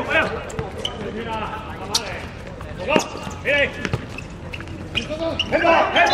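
A football being kicked and bouncing on a hard court surface: several sharp thuds, the clearest about a second apart in the middle, with players shouting between them.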